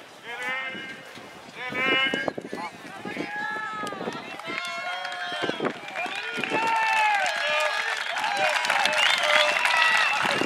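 Several men's voices shouting and calling out over one another without clear words, growing busier and louder toward the end.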